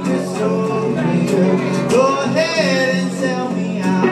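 Live band music in a country style: plucked acoustic guitar with a voice singing over it.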